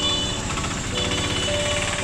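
Fast, rattling engine of an auto-rickshaw close by, in busy street traffic, with steady high music-like tones over it.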